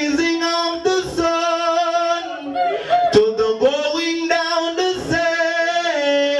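A man singing long, held melodic notes into a handheld microphone, with the pitch sliding between phrases. A few short, sharp clicks fall between the notes.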